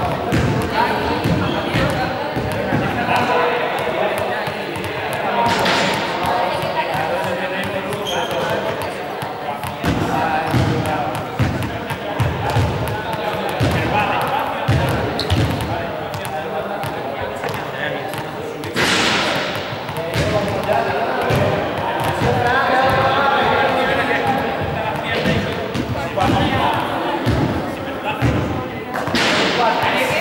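Small balls bouncing repeatedly on a sports-hall floor, the knocks echoing in the large hall, with voices chattering throughout.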